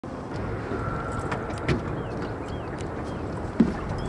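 Steady rushing background noise on an open fishing boat out on the water, broken by two sharp knocks on the boat, the louder one near the end. A few faint high chirps come in around the middle.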